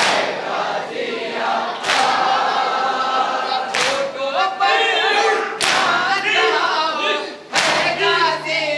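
A crowd of Shia mourners chanting a lament in chorus, with loud unison chest-beating slaps of matam landing about every two seconds, four times.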